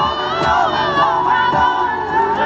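Live band music with several voices singing or chanting together over it, and a kick drum thumping twice about a second apart.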